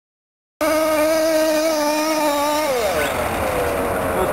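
HPI Baja radio-controlled buggy's small two-stroke petrol engine running at high, steady revs, starting abruptly just over half a second in. About two seconds later the revs drop and the pitch falls.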